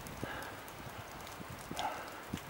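Irregular small knocks and scuffs of a trad climber moving on a granite crack: hands, shoes and racked gear against the rock.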